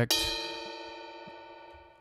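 A single sampled note of struck metal percussion from the VSCO 2 Community Edition percussion patch: a sharp strike followed by a bright, bell-like ring that fades slowly and steadily.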